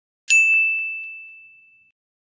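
A single bright ding, the chime sound effect of a logo intro, struck once and then fading away over about a second and a half as one clear high tone.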